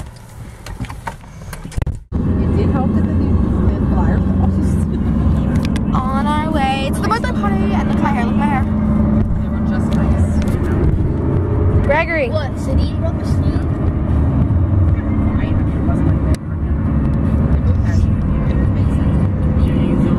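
Road noise inside a moving car's cabin: a steady low rumble of engine and tyres that starts abruptly about two seconds in, with short stretches of voices over it.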